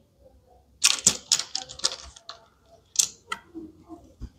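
Small plastic toy pieces from a miniature laundry set, hangers among them, clicking and clacking against each other as they are handled: a quick run of sharp clicks about a second in, then two more clicks a little before the end.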